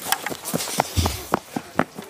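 Quick footsteps of a firefighter running on grass while carrying a wooden ladder: an irregular run of short, sharp taps, about three a second, with a dull low thump about a second in.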